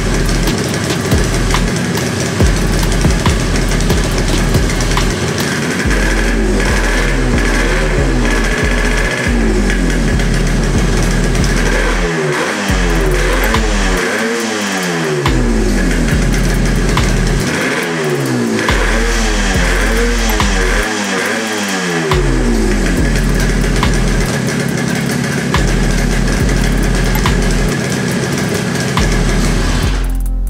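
Yamaha RD350's two-stroke parallel-twin engine running, blipped several times so its pitch rises and falls, most of all around the middle.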